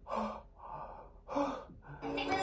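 A man gasping in excited reaction, three short breathy gasps in quick succession.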